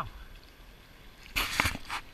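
Faint steady rush of a shallow river, then about one and a half seconds in a short burst of splashing and handling noise close to the microphone as a hooked rainbow trout is brought to hand at the surface.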